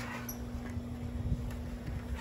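Quiet outdoor background: a steady low hum over a low rumbling noise, with no distinct event.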